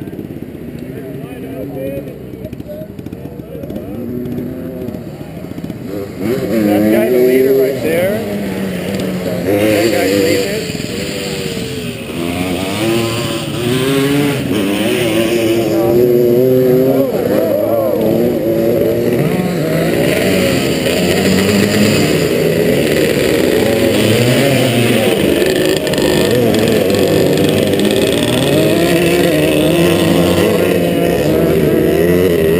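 Several dirt bike engines idling and revving in blips at a motocross start line, several pitches rising and falling over one another. It grows louder and busier about six seconds in.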